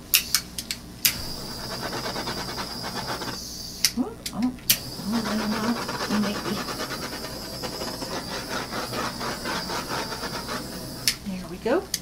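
Handheld torch flame hissing steadily as it is passed over wet acrylic pour paint to pop surface bubbles. It runs in two stretches, the first from about a second in and the second from about five seconds until near the end, with sharp clicks around where it starts and stops.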